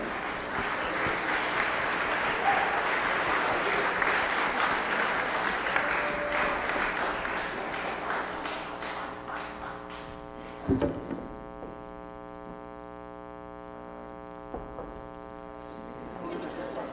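Audience applauding, fading out after about nine seconds. A single thump follows shortly after, and then a steady electrical hum is left.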